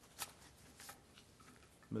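A few brief, faint rustles and clicks of paper being handled at a microphone, over quiet room tone.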